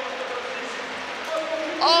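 Stadium crowd cheering, an even wash of noise, with a held tone fading away in the first moments. A man's voice comes in near the end.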